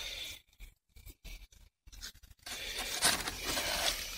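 Cardboard scraping and rubbing as the flap of a cardboard box is folded down and pressed shut: short scratchy sounds with quiet gaps at first, then steadier rubbing from about halfway.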